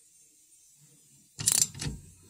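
A ratchet wrench with an Allen-bit socket working a brake caliper mounting bolt: a short, sharp ratcheting burst about a second and a half in, then a second shorter one just before the end, after near silence.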